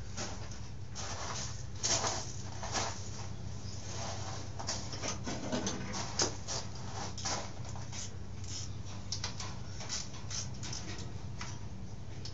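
Light, irregular clicks, rattles and rustles of cables and engine parts being handled on a stripped dirt-bike frame, over a steady low hum.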